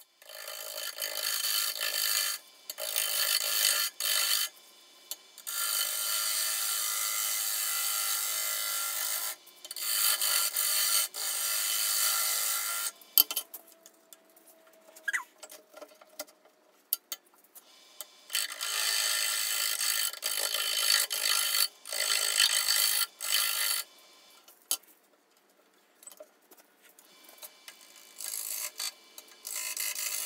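Bowl gouge cutting a green spalted beech bowl blank spinning on a wood lathe, a steady shearing hiss of shavings coming off. It comes in repeated passes of one to four seconds, with short pauses as the tool is lifted and repositioned.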